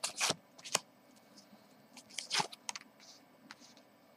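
A deck of tarot cards being handled and drawn: short rustles and snaps of card stock. There is a burst at the start, a sharp snap just under a second in, and another rustle a little past two seconds.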